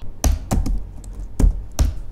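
Typing on a laptop keyboard: about half a dozen sharp keystrokes, unevenly spaced.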